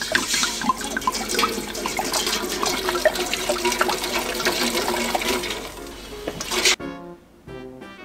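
Red wine poured from a glass bottle into a metal stockpot: a continuous splashing pour with the bottle glugging, cut off abruptly about seven seconds in.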